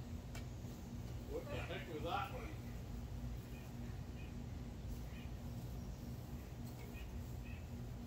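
A low, steady hum with a brief faint voice about a second and a half in, and a few soft ticks.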